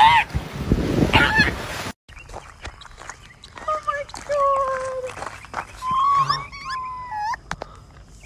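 Surf washing with a couple of seal calls for the first two seconds. Then baby raccoons chirping: a series of thin, whistling calls, some held for about a second and falling slightly in pitch, from about halfway through to near the end.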